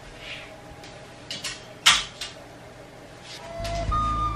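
A few short clicks and knocks of clothes hangers being taken off a closet rail, the loudest about two seconds in. Background music starts near the end.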